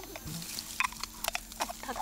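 Leaves and twigs crackling and clicking as an insect-collecting box is pushed up into a tree's foliage, the clicks coming thick in the second half, with quiet voices.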